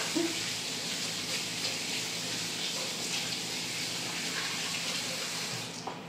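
Kitchen faucet running steadily into a stainless steel sink, shut off suddenly near the end.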